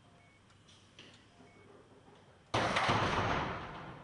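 A sudden loud burst of noise about two and a half seconds in, dying away over about a second and a half.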